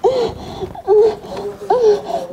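High-pitched giggling in short rising-and-falling bursts, repeated several times.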